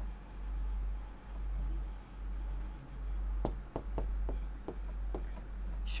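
Hand-writing on a classroom board, with scratchy strokes and, a little past halfway, a quick run of sharp taps of the writing tip against the board.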